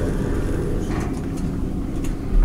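Steady low rumble of a Schindler 330A hydraulic elevator car travelling down, heard from inside the cab.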